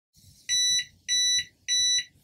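Three short electronic beeps, evenly spaced a little over half a second apart, from a Q-Cup Max portable hydrogen water bottle. They signal that its 10-minute hydrogen generation cycle has finished.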